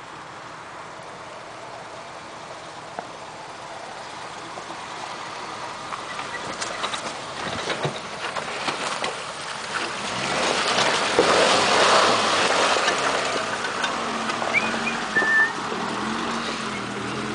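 Suzuki Samurai 4x4's engine running as it drives closer along a muddy track, growing steadily louder, with water and mud splashing under its wheels as it crosses a water-filled rut, loudest about eleven to thirteen seconds in.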